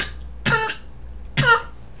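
A person coughing: the tail of one cough at the very start, then two short coughs about a second apart. It is a persistent cough that a cough drop is not relieving.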